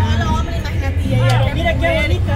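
People talking in Spanish over a steady low rumble.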